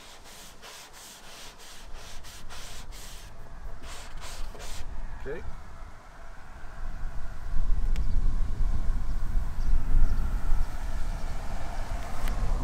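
Plastic squeegee rubbing over a vinyl decal's transfer paper on a car door in a quick series of short strokes, about three a second, pressing the decal onto the paint. In the second half a loud low rumble takes over.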